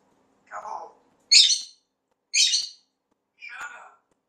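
African grey parrot giving four short calls about a second apart. The two in the middle are loud and high-pitched, the first lower, the last mid-pitched.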